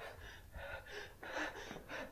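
A man breathing in several short, audible breaths.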